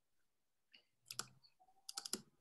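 Faint clicks of a computer mouse and keyboard, a few about a second in and another cluster near the end, with a brief faint tone between them, in an otherwise near-silent room.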